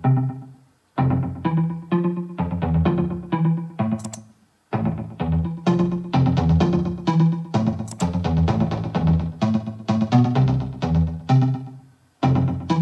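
Soloed synth pluck track from a progressive house production playing back: a quick run of short plucked synth notes in a repeating pattern. It cuts to silence briefly twice.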